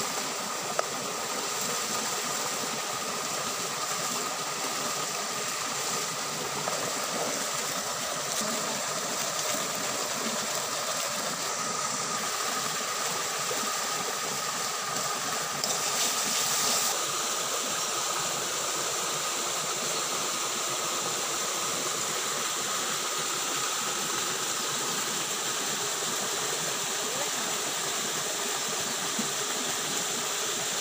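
Shallow stream running over rocks: a steady rushing with a thin high whine running through it. The sound shifts slightly about 17 seconds in.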